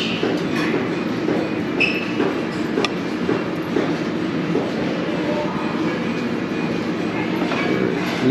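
Steady murmur of many voices in a busy buffet dining room, with two light metallic clinks about two and three seconds in, most likely the metal serving tongs against the buffet pans or plate.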